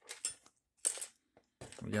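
Small chrome-plated plastic model-kit parts clicking and clattering against each other as they are handled, in two short bursts in the first second.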